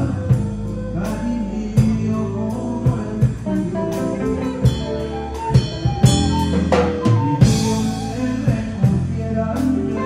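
Live band music: a flute playing the lead melody over drum kit and electric guitar, with a steady beat.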